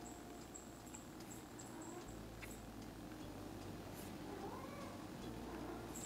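Faint domestic cat purring, with a soft, short meow about three-quarters of the way through.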